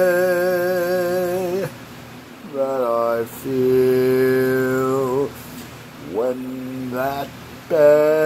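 A man singing unaccompanied with no clear words, holding long notes with a wide vibrato. A long held note ends after about a second and a half, a short note and another long held note follow in the middle, then two short upward swoops, and a new held note starts near the end.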